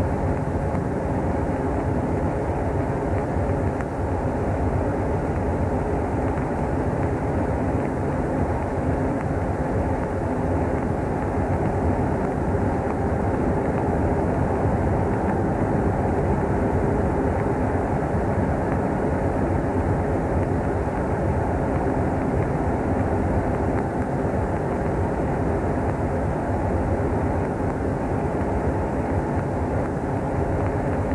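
Death-industrial drone music: a dense, steady, low rumbling drone with no beat or rhythm, its sound weighted toward the bass and lower midrange, from a 1996 cassette master tape.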